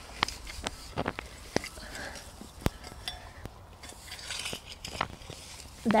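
Metal garden hand tool digging through soil to lift potatoes: short scrapes and irregular sharp clicks as the blade goes into the ground, the loudest about two and a half seconds in.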